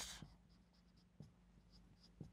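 Faint strokes of a marker pen writing on a whiteboard, with a small tick or two as the tip meets the board.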